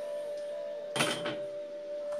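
Handling noise on a tabletop: a single short clatter about a second in as objects are moved, over a faint steady hum.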